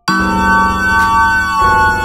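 Electronic music playing back: a sustained synth lead chord held over a bass line, with a single drum hit about halfway through and the bass changing near the end.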